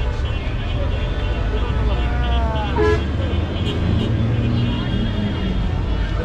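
Busy roadside traffic: engines running with a steady low rumble, a short horn toot about three seconds in, and voices in the background.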